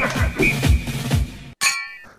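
A short musical transition sting: a few low beats and a ding, then a bright bell-like chime near the end that cuts off abruptly.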